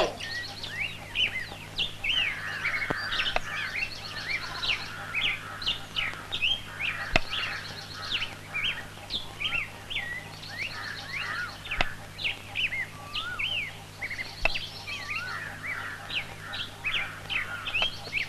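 Many small birds chirping in a dense, continuous chorus of short, quick calls, over a steady low hum, with a few faint clicks.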